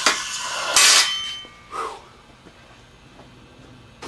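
A small gold button, just melted, tipped from a crucible into a stainless steel bowl: a knock at the start, then about a second in a metallic clatter with a short ringing from the bowl, after which it falls quiet.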